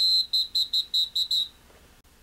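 High-pitched electronic beeping: one long beep, then about five quick beeps at roughly four a second, stopping about one and a half seconds in.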